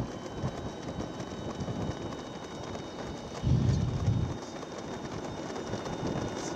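Outdoor race ambience picked up by the moving camera's microphone: a steady rushing noise, with a louder low rumble about three and a half seconds in that lasts under a second.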